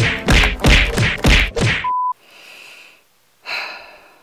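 A rapid series of about six heavy whacks and thuds, like punches in a beating sound effect. It ends in a short steady beep, after which the sound cuts out.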